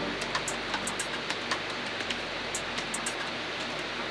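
Typing on a laptop keyboard: irregular quick key clicks over a steady background hiss.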